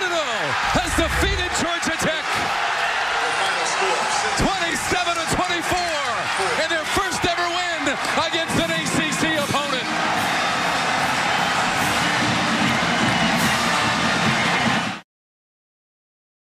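Football players and coaches cheering, shouting and whooping over stadium crowd noise, celebrating a game-winning field goal, with sharp slaps and claps among the voices. It cuts off suddenly near the end.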